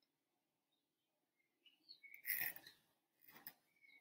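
Near silence: quiet room tone with a few faint, short high chirps and a brief soft rustle a little over two seconds in.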